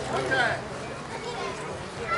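Voices of people on a ball field: a raised, high-pitched call in the first half-second, then fainter chatter.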